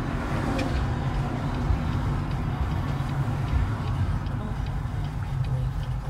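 Steady low rumble of a car's engine and tyres heard from inside the cabin while driving, with a few faint ticks over it.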